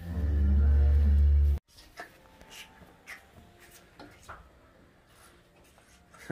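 A cow mooing: one low call lasting about a second and a half that cuts off abruptly, then faint rustling in straw.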